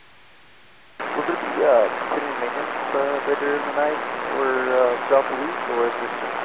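Airband VHF radio: a low hiss, then about a second in a transmission keys up with a loud rush of static. A voice speaks under the static and is hard to make out.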